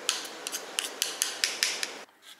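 Kitchen knife chopping boiled egg on a ceramic plate, the blade clicking against the plate about ten times in quick, uneven strokes over a steady background hiss.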